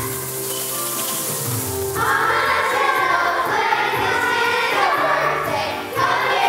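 Children's choir singing with instrumental accompaniment. For about the first two seconds mainly the accompaniment is heard, then the massed young voices come in and carry on over it.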